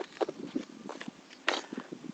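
A few soft, irregular footsteps on stony, sandy ground.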